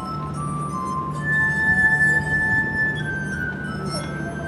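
Glass harp played by rubbing wet fingertips around the rims of water-tuned wine glasses, giving sustained, pure ringing notes that overlap and change. One high note, the loudest, is held for about two seconds in the middle, over a steady low hum.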